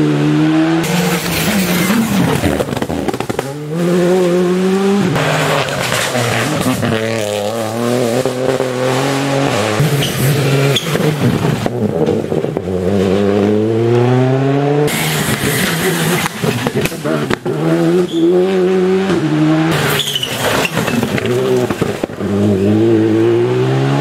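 Rally cars passing at speed, one after another, their engines revving hard. Repeated rising climbs in pitch are cut short by quick gear changes and drop away as each car goes by.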